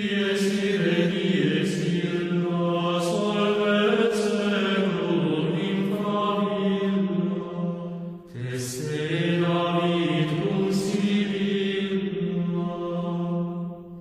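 Chanted vocal music: voices hold long, steady notes in two phrases, with a short break about eight seconds in.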